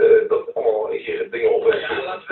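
Speech: voices talking on a radio broadcast, with no other distinct sound.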